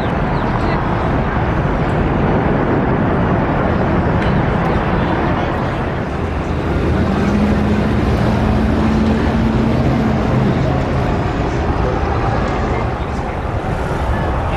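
City street traffic noise with the voices of passers-by. A vehicle's engine hum stands out for a few seconds in the middle.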